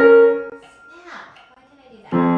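Grand piano chord ringing and fading away, followed by a pause of about a second and a half in which a voice briefly murmurs.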